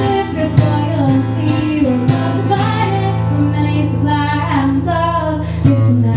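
A woman singing live with a strummed acoustic guitar. A chord struck about two seconds in rings on under a long sung line until a fresh strum near the end.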